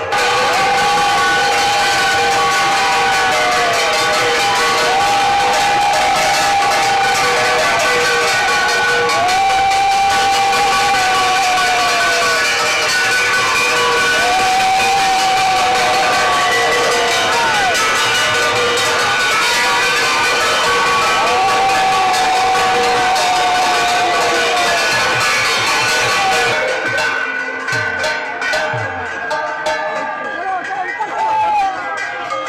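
Brass gongs and cymbals beaten hard and continuously amid a cheering crowd, with a long held tone that returns every four seconds or so and dips at its end. The clanging stops about four seconds before the end.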